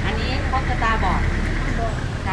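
Steady low rumble of a nearby vehicle engine running, with people talking over it.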